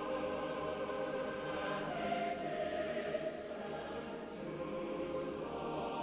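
Background film-score music: a choir singing long held chords, with the chord changing about five and a half seconds in.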